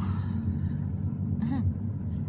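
Steady low engine and road rumble heard inside the cabin of a moving car.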